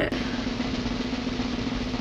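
Snare drum roll sound effect, an even continuous roll with a steady low tone held under it, building suspense.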